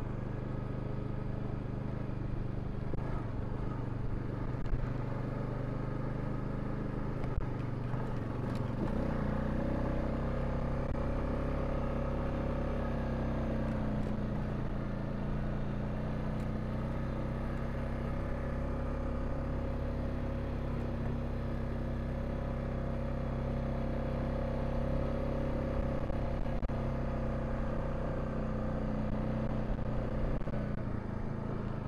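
Honda Rubicon ATV's single-cylinder four-stroke engine running as it drives along a dirt trail, heard from the riding position. Its pitch rises about a third of the way in, dips back a few seconds later and then holds steady. A few small knocks come early on.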